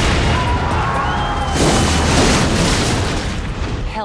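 Film sound effect of an avalanche of snow blasting into a log building: a loud, sustained rush with a deep rumble, surging again about a second and a half in and easing off near the end.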